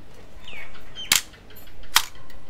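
Yashica TL-Electro SLR firing its shutter on bulb: a sharp click as the mirror and shutter open about a second in, and a second sharp click as they close just under a second later.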